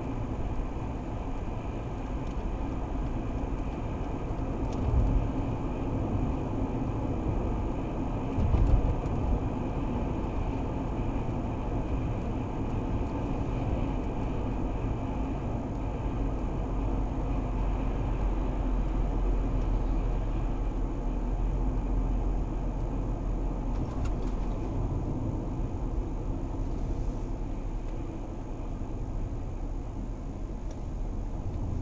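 Steady low road and engine rumble of a Mercedes car driving at about 65 km/h, heard inside the cabin through a dashcam microphone. Two brief low thumps come about five and nine seconds in, and the noise eases slightly near the end as the car slows.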